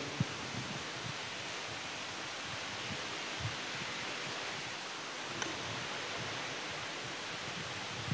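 Quiet background hiss in the church, steady throughout, with a few faint small clicks near the start, around the middle and a little after.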